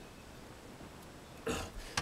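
Quiet room tone, then about one and a half seconds in a single short throat sound from a man, just before he starts talking again.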